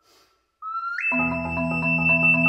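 Ocarina and marimba duo playing: after a brief pause the ocarina slides up into a note and leaps to a high held note about a second in, and the marimba comes in under it with rolled chords of rapidly repeated mallet strokes.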